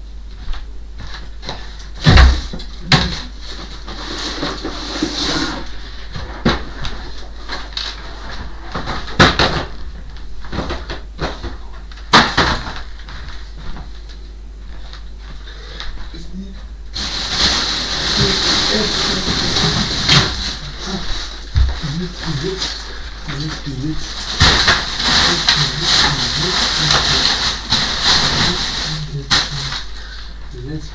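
Household things being handled around a wooden wardrobe: a few sharp knocks and thuds in the first half, then a longer stretch of rustling and handling with a voice in the second half.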